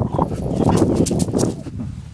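A Belgian Tervuren galloping up through dry grass, its paws thudding quickly on the ground and the stalks rustling.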